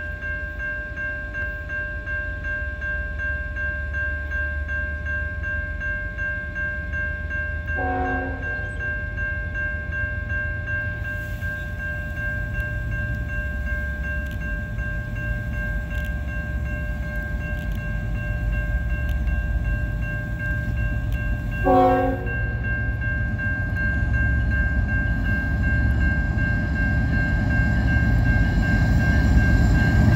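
A level-crossing warning bell rings steadily as a freight train's diesel locomotive approaches, its rumble growing louder. The locomotive's horn sounds a short blast about eight seconds in, another about twenty-two seconds in, and starts a longer blast at the very end.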